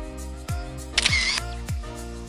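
Background music with a steady drum beat; about a second in, a short camera shutter click.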